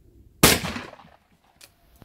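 A single shotgun shot from an over-and-under shotgun firing at a clay target: one sharp report about half a second in that rings away over about half a second. A faint click follows near the end.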